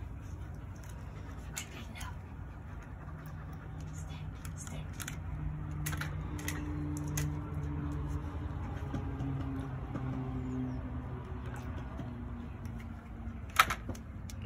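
A puppy pawing at a plastic bucket of water: scattered light knocks and splashes from its paw and a floating ball against the bucket, with one sharper knock near the end. A low drone swells and fades through the middle.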